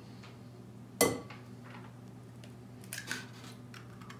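An egg struck sharply once against the rim of a glass mixing bowl about a second in, the glass ringing briefly. A few faint clicks of the shell being pried open follow near the end.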